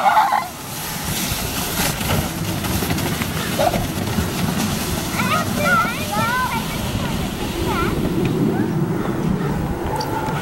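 Children's high voices calling out in a short cluster of rising-and-falling shouts around the middle, over a steady low rushing noise.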